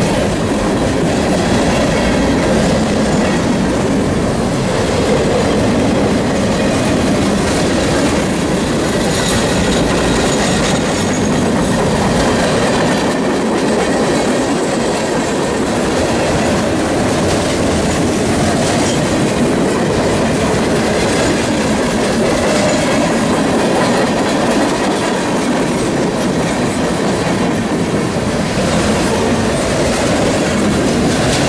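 Freight cars of a long train rolling past at close range: a loud, steady noise of steel wheels on the rails, with scattered clacks.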